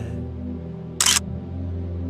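Background music with steady low tones, and about a second in a short, sharp camera-shutter click sound effect, the loudest sound here.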